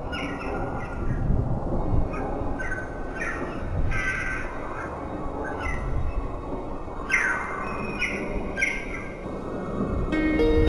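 Crows cawing repeatedly, about a dozen short calls that fall in pitch, over a steady low rumbling noise.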